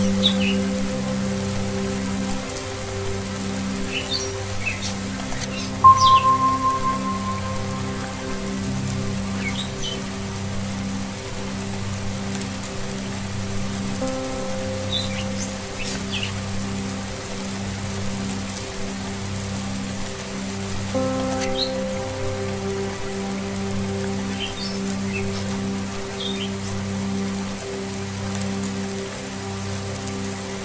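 Steady rain under Tibetan singing-bowl music, a sustained low drone. A bowl is struck about six seconds in and rings out, fading over a couple of seconds. Short bird chirps come every few seconds.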